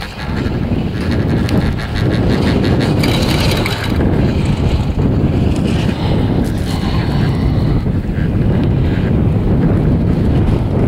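Wind rushing over the microphone on a moving chairlift, a steady low rumble that swells right at the start and stays loud throughout.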